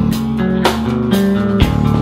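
Live band playing an instrumental stretch of a rock song, with electric guitar and drums over a held bass line.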